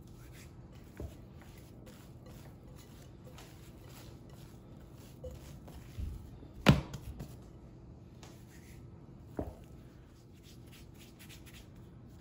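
Hands working risen yeast dough in a glass bowl and rolling off dough balls: soft, quiet handling noises and light taps throughout, with one sharp knock about halfway through.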